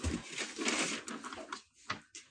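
Rustling and crinkling of paper instruction sheets being handled, with a short knock near the end.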